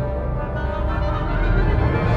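Symphony orchestra playing sustained low, dark chords, swelling slightly louder toward the end.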